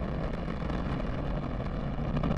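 Antares rocket's two first-stage AJ-26 engines firing in flight, heard from the ground as a steady, noisy rumble with most of its weight in the low end.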